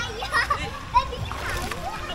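Pool water splashing as a small child is lifted up out of shallow water, with children's voices over it.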